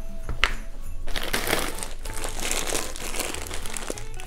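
A plastic bag of frozen corn crinkling as it is handled, starting about a second in, after a single knock near the start.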